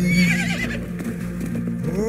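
A horse whinnying once, a shrill wavering call that lasts under a second near the start, over the song's steady backing music.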